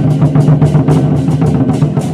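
Troupe of large Chinese barrel war drums beaten with sticks together in a fast, dense rhythm, loud and steady.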